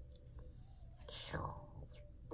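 A child's soft, breathy mouth sound, lasting about half a second, comes about a second in, against a quiet room.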